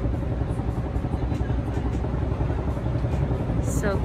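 A steady, fairly loud low rumble of outdoor background noise, with no distinct events in it.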